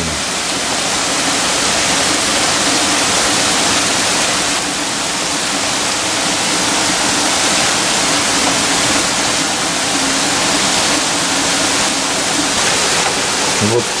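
Heavy rain pouring down in a steady, dense hiss, with a faint low hum underneath for most of the time.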